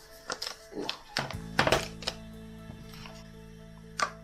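Background music with a steady sustained chord, over a few taps and knocks from handling a leather MagSafe card wallet and an iPhone 12 Pro, the loudest about halfway through, and a sharp click right at the end as the wallet snaps magnetically onto the back of the phone.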